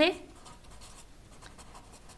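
Green marker pen writing on lined notebook paper: faint, quick scratching strokes.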